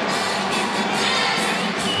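Basketball arena crowd cheering and shouting, a steady wash of many voices.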